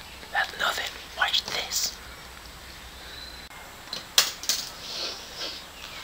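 A person whispering in short breathy phrases, then two sharp clicks about four seconds in, followed by a little more soft breathy sound.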